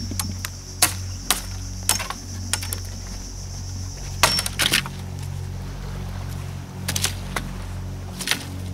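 Machete chopping twigs off a dry branch: about eight sharp strikes, several in quick pairs.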